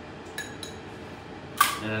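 A spoon giving two light taps on a dish, then a single sharp metal clink of utensils about a second and a half in, followed by a man starting to speak.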